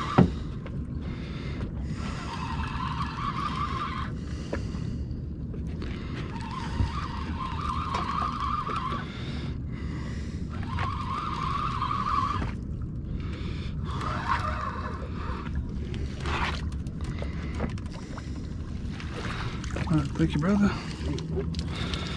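Spinning reel being cranked in spurts while bringing in a hooked flounder: a high whir lasting one to two seconds, repeated every few seconds, which stops about fifteen seconds in. A steady low rumble of wind and water runs underneath.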